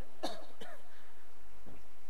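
A pause in narration: a few faint, short throat sounds from the speaker, like a soft cough, over a steady low hum.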